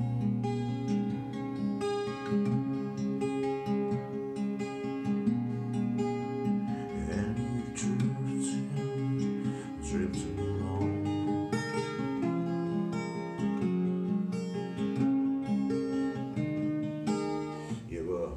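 Twelve-string acoustic guitar, capoed at the sixth fret, played as a picked passage of ringing notes that change steadily over held chord shapes.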